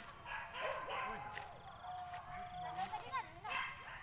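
Boar-hunting dogs barking and whining, with a few quick rising yelps about three seconds in, over people talking in the background.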